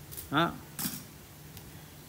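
A single short spoken syllable, then a brief faint handling noise from the metal plate being turned in the hand, over low room tone.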